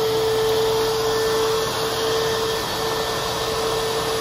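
Small air compressor running steadily, a constant hum with a hissing edge, pushing compressed air down a hose for breathing underwater.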